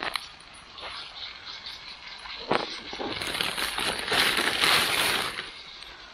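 Knife sawing through a crusty bread roll, the crust crackling, denser for a couple of seconds past the middle, with one sharp knock about two and a half seconds in. Underneath, a meatball sizzles in butter in a small pot on a spirit stove.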